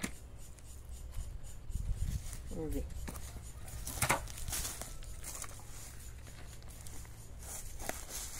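Manual post-hole digger working soft, loose soil: crunching and scraping of the blades in the earth, with a dull thud about two seconds in and a sharp knock about four seconds in.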